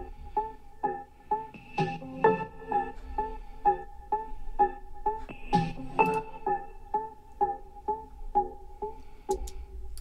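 A minimal tech house breakdown playing back with no drums: a plucky arpeggiated synth from Native Instruments Massive, its notes repeating about twice a second through an echo effect.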